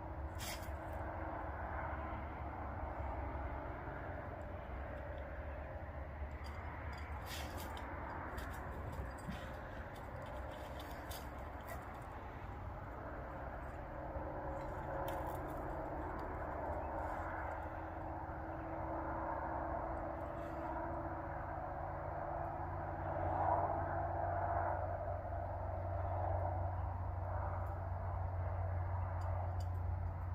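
Steady outdoor background noise: a low rumble with a hiss over it, and a few faint clicks in the first half.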